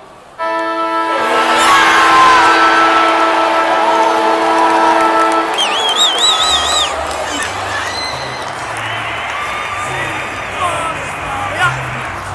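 Stadium's final siren sounding one long steady blast of about five seconds, starting suddenly, marking the end of the match. A crowd cheers and claps with it and carries on after it stops, with a brief shrill warble from the crowd soon after the siren ends.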